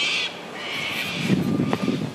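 A bird's harsh, crow-like caws, two drawn-out calls, the second longer, with low thuds of footsteps and camera handling in the second half.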